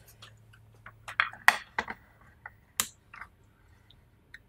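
Light clicks and knocks from a small electric sugarcraft steamer being handled and set down on a work table: about a dozen short taps over the first three seconds, the loudest about one and a half and about three seconds in. A faint steady high tone sounds for about a second in the middle.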